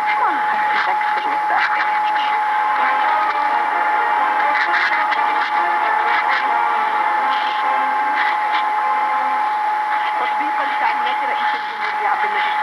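A distant AM broadcast on 1161 kHz medium wave, Radio Tamanrasset, heard on a radio receiver as a weak voice buried in heavy static, with a steady whistle just under 1 kHz from interference by another station's carrier.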